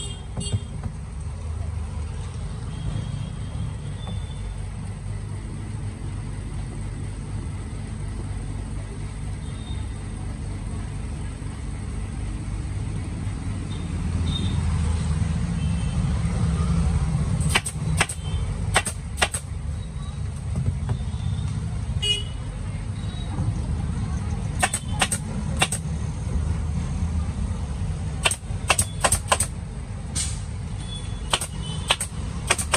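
Pneumatic staple gun firing staples into a motorcycle seat base, fixing the seat cover, in short quick runs of sharp clicks: a burst of about four shots roughly two-thirds through, a couple more a little later, and another quick run near the end. Under it is a steady low rumble.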